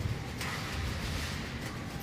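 Steady background noise of a large hypermarket hall: a low, even hum and hiss with no distinct events.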